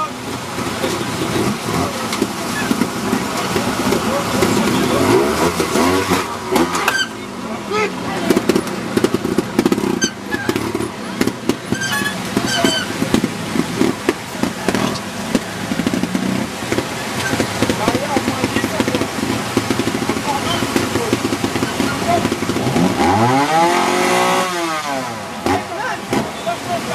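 Trials motorcycle engine blipped and revved in repeated short bursts while picking over rocks, with one longer rise and fall of the revs near the end. Voices mix in throughout.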